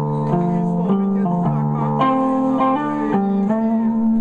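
Live rock band playing loud, with electric guitar chords shifting every half second or so over a sustained backing.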